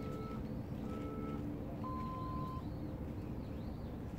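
Short, high electronic beeps about a second apart, then one longer, lower beep about two seconds in, over a steady low rumble.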